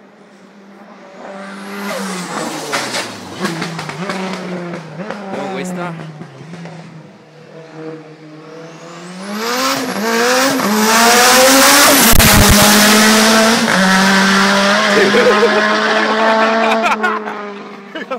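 Race car engine revving hard through its gears, pitch rising and falling with each change. It fades briefly in the middle, then climbs steeply in pitch and grows much louder from about ten seconds in, over a steady low hum.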